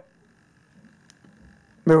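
Near silence: room tone with a faint steady high-pitched whine and a few faint soft ticks, before a man's voice resumes near the end.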